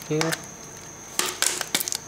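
Plastic snap-on back cover of a Samsung Galaxy S5 being pried off the phone: a quick run of sharp clicks and snaps about a second in as its clips let go.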